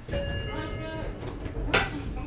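A person's drawn-out voice held for about a second, then a single sharp knock near the end, over a low rumble in the cable car cabin.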